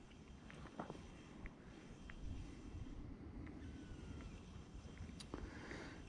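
Quiet lakeside background: a faint low rumble with a few soft, scattered clicks from handling the fishing rod and reel during a slow retrieve.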